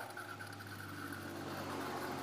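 A steady low hum over a faint hiss, with no sudden sounds.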